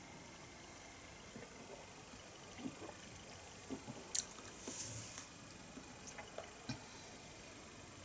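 Faint wet mouth and swallowing sounds of a man sipping and tasting beer, with small clicks throughout. About four seconds in comes a sharp tap as the glass is set down on the table, followed by a short breathy hiss.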